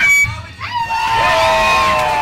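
A live rock band's song stops abruptly just after the start. Several audience members then whoop with long calls that slowly fall in pitch.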